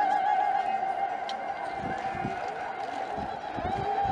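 Women ululating, a high trilling cry held on one wavering pitch that carries on and gradually weakens, with crowd voices underneath.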